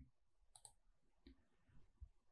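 Near silence with a few faint clicks, the clearest about half a second in: a computer mouse clicking to advance a presentation slide.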